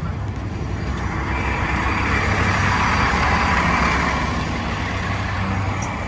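Gillig BRT city bus running, a steady low engine rumble with a wash of engine and road noise that swells to its loudest about halfway through and then eases off.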